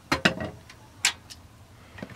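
A few short clicks and knocks of kitchen utensils and cookware, the sharpest about a second in.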